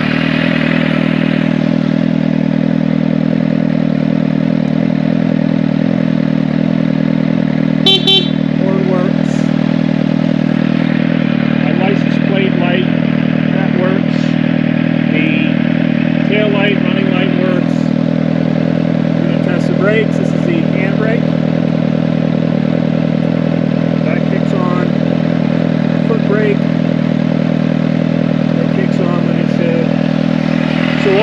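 Suzuki GSX-S750's inline-four engine idling steadily at operating temperature through a Yoshimura slip-on exhaust. A short sharp blip cuts in about eight seconds in.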